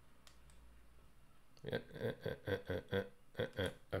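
Quiet room tone with two faint clicks, then from about a second and a half in a quick run of clicks and taps on a computer keyboard, about four a second.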